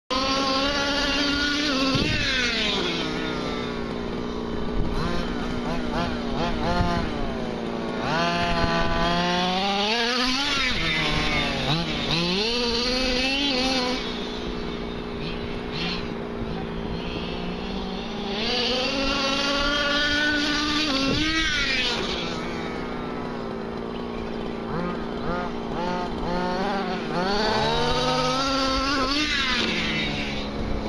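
HPI Baja 5T 1/5-scale RC truck's small two-stroke petrol engine running and revving up and down over and over, its pitch rising and falling with each burst of throttle.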